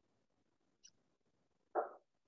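A dog barks once, short and sharp, near the end, with a faint high chirp about a second before it.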